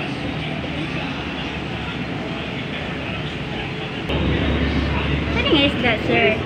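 Steady background noise, with a low rumble setting in about four seconds in and a brief voice near the end.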